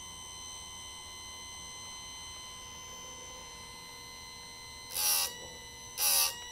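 Electric chainsaw sharpener's grinding-wheel motor running with a steady high whine. About five seconds in, the wheel is pulled down onto a chain cutter for a brief loud burst of grinding, and a second grind starts at the very end.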